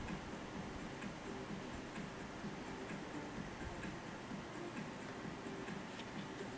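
Faint, regular ticking over quiet room tone.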